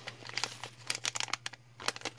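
Foil-backed plastic component bag crinkling as it is turned over in the hands: a run of irregular crackles.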